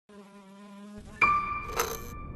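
Buzzing-insect sound effect, a steady buzz for about the first second. About a second in it gives way to a loud, bright ringing chime that holds its pitch, with a short shimmering hit near the end.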